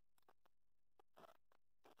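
Near silence, with a few very faint soft ticks from a crochet hook working cotton string.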